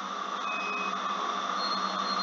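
Steady background hiss with a low electrical hum. Two faint, brief high tones come through, one about half a second in and one near the end.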